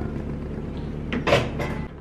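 Kitchen handling sounds over a steady low hum, with one short knock about a second and a third in, like a cupboard door shutting, and a lighter one just after.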